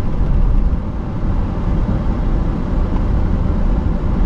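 Steady low rumble of a manual car's engine and tyres heard inside the cabin, the car creeping forward in first gear at about 5 km/h on the clutch.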